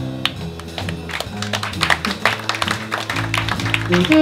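Live jazz: a double bass walks a line of even plucked notes under drums, with scattered clicks and taps that include a little audience clapping.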